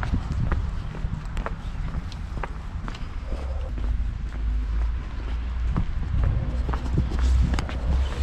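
Footsteps on wet cobblestones, about two steps a second, each a short sharp tap, over a steady low rumble.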